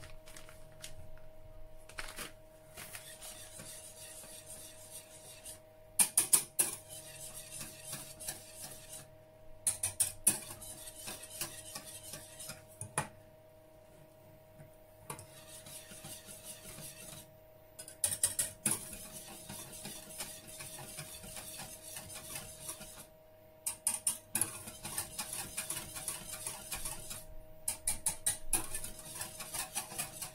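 Metal wire whisk stirring a white sauce in a stainless steel saucepan, clinking and scraping against the pan in short bursts every few seconds. The stirring keeps the sauce from sticking and burning on the bottom. A faint steady hum runs underneath.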